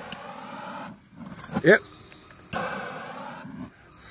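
Handheld propane torch flame burning with a steady hiss, dropping out briefly about a second in and coming back louder about halfway through.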